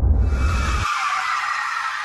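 Soundtrack noise from an animated short: a high, noisy screech sets in over a deep rumble. The rumble cuts off suddenly about a second in, and the screech carries on alone.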